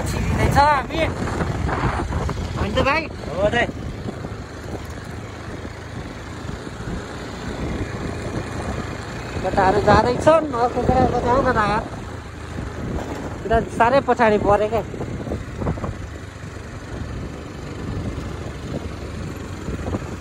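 Motorbike riding noise: an engine running under wind buffeting the microphone, with voices calling out in bursts at the start, around ten seconds in and around fourteen seconds in.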